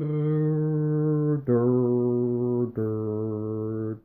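A man humming with closed lips in three long held notes of a little over a second each, every note a step lower than the last, with a fourth note starting near the end.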